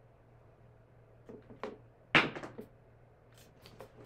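A pair of dice thrown down a craps table: a couple of light clicks, then one sharp, loud clack a little after two seconds in as they strike the far end, followed by a short rattle of smaller clicks as they tumble and settle.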